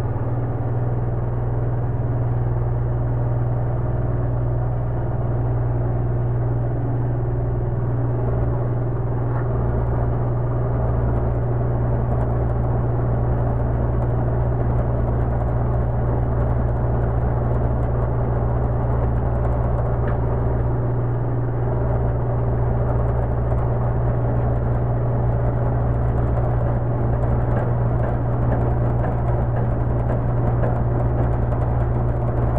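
Vacuum pump of a brake-booster test bench running with a steady low hum, pulling vacuum on the booster under test.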